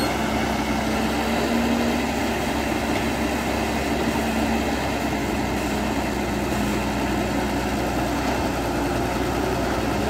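Diesel engine of a CAT crawler excavator running steadily under hydraulic load as the arm and bucket dig into soil.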